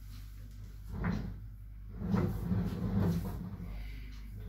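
A person sitting down and settling in front of the camera: a knock about a second in, then a stretch of irregular bumps and rustling from furniture and clothing, over a steady low room hum.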